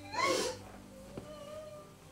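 A woman's short, high-pitched crying wail with a wavering pitch in the first half second, then faint and quiet.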